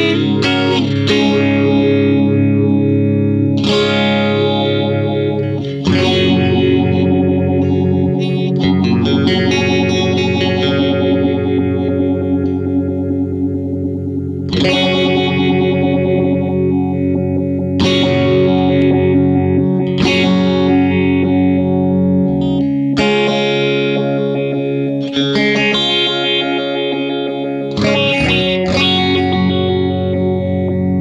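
Electric guitar played through a Diffractor Soundings Chromatic Journey analog phaser pedal. Chords are struck about every two to three seconds and left to ring.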